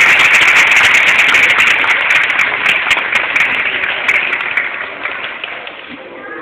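Audience applauding, loud at first and gradually dying away over the last couple of seconds.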